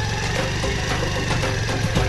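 Jeep engine running with a rapid, steady chugging beat.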